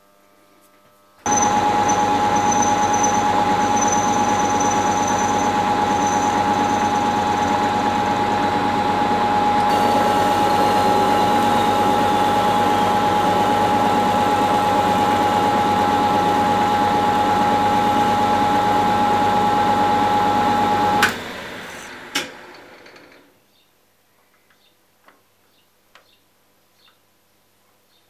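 Small hobby lathe starting up about a second in and running with a steady motor whine while a parting tool cuts into a spinning metal rod; the sound turns harsher about ten seconds in. Near the end it is switched off with a sharp click and winds down over a couple of seconds, with a second click.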